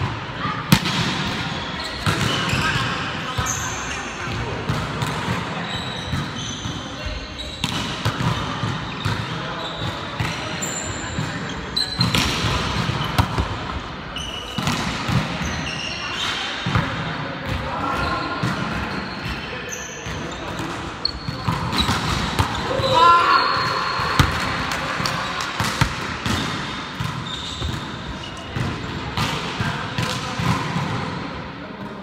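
Indoor volleyball rally: the ball is struck again and again with sharp slaps, and players call out between the hits, all echoing in a large gymnasium.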